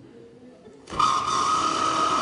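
Quiet at first, then about a second in a small motor-like whir starts suddenly and holds with a steady high tone: a comic mechanical sound effect for the gag binoculars popping out.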